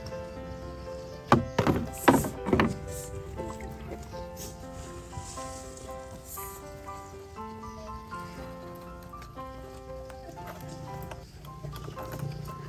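Three loud knocks on the small boat in quick succession, about a second and a half to two and a half seconds in, as the paddle is put down. Soft background music of held melodic notes plays under them and on to the end.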